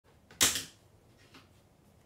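A sharp click close to the microphone, with a fainter click about a second later.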